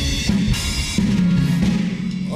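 Acoustic drum kit played along with a Korean trot song's backing track: kick, snare and cymbal strikes over steady sustained backing instruments.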